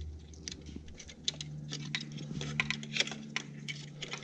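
Light plastic clicks and rattles of a wiring-harness electrical connector and its loose wire being handled and plugged in by hand. A steady low hum comes in about a second in.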